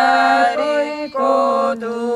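Unaccompanied voices singing an Estonian regilaul in long held notes that step between a few pitches, with a short break for breath about a second in.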